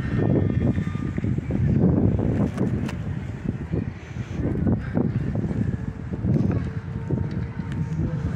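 Wind buffeting the microphone: an irregular low rumble that rises and falls in gusts. A faint steady hum joins in past the middle.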